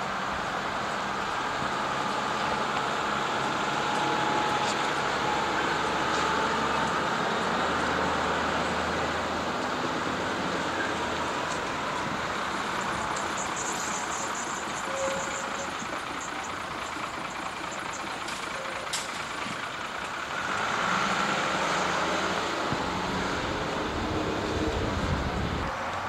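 Diesel bus engines running as buses move through a bus station, over a steady traffic background. A short hiss comes about halfway through, and the low engine sound grows louder for the last few seconds as a single-deck bus pulls in close.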